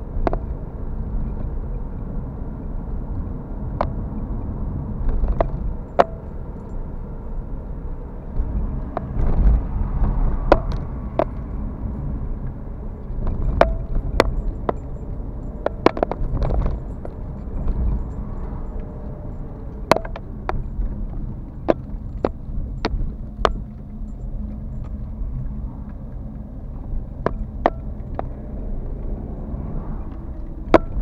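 Car driving along a street, heard from a dashcam inside the cabin: a steady low rumble of road and engine, with irregular sharp clicks and rattles.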